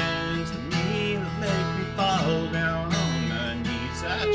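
Acoustic guitar strumming chords while a fiddle plays a country-style fill of sliding, bowed notes.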